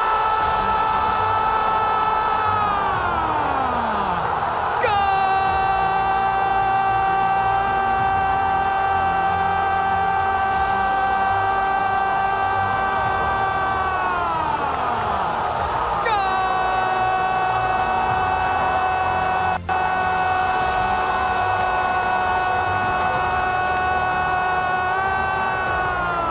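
A loud, horn-like tone, held steady and then falling away in pitch, sounded three times in a row: the first fades out about four seconds in, the next two start abruptly and each hold for about ten seconds.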